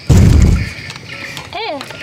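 Edited-in comic explosion sound effect: a sudden loud boom with a deep rumble, lasting about half a second, marking the burning heat of a hot bite. A short falling voice-like call comes near the end.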